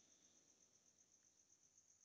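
Near silence between sentences, with only a faint, steady, high-pitched pulsing tone in the background.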